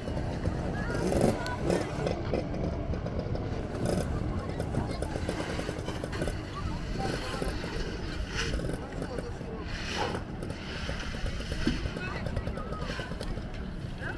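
Outdoor riverbank ambience: scattered voices of people working and wading, over a steady low rumble, with a couple of sharp knocks past the middle.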